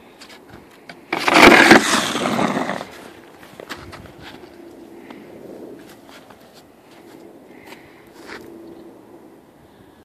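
Snow shovel pushing through wet snow: a loud scrape of about a second and a half a second in, followed by quieter scuffs and taps of the blade and footsteps.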